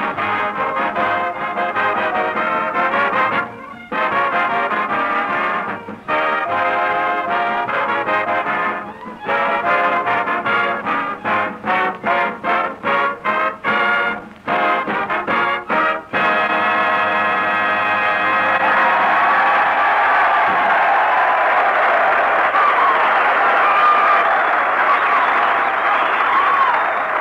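A big band radio orchestra, brass to the fore, playing an up-tempo number in short, punchy phrases. After about sixteen seconds it moves into a long held passage.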